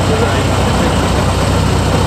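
1932 Ford Model B truck engine running steadily at idle.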